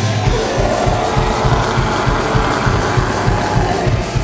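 Live melodic death metal band playing at full volume: distorted electric guitar, bass and keyboards over a steady, fast kick-drum beat.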